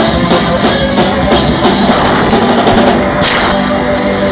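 Live rock band playing at full volume: drum kit, electric bass and guitar, with a steady beat of about three strokes a second and a louder hit about three seconds in.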